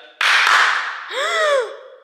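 A sharp hand clap, sudden and loud with a short echo, switching a clap-controlled floor lamp, followed about a second in by a woman's surprised 'oh' that rises and falls in pitch.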